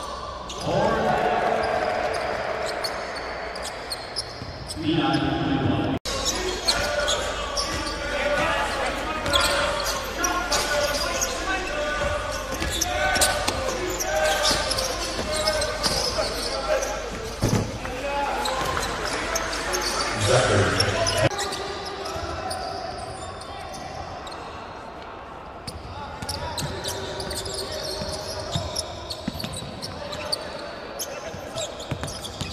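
Basketball game sound in an indoor arena: a ball bouncing on the hardwood court amid players' voices and shouts echoing in the hall. The sound changes abruptly about six seconds in and again about 21 seconds in, where one game clip cuts to the next.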